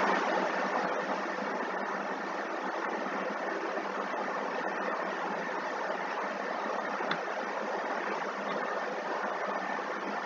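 Steady, even hiss-like noise with a faint high tone running through it, like a fan or background hum.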